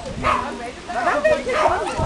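A dog whining and yipping in several short high calls, with people talking.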